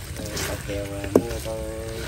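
People talking, one voice drawing out a word near the end, with a single sharp knock about halfway through over a low steady hum.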